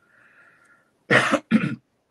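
A man coughs twice in quick succession, two short harsh bursts about a second in.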